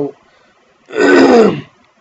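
A man clearing his throat once, about a second in: a single harsh rasp lasting under a second, falling in pitch.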